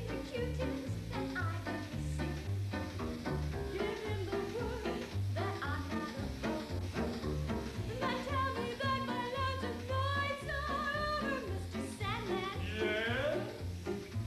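Piano music with a stepping bass line, joined by a woman singing in a warbling, operatic style with wide vibrato, most strongly in the second half, ending in a swooping rise and fall near the end.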